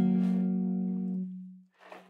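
Acoustic guitar in open D tuning: several plucked notes ring together and die away, fading out about a second and a half in.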